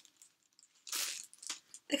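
Paper or packaging being handled on a wooden dresser: a short crinkling rustle about a second in, followed by a few light taps.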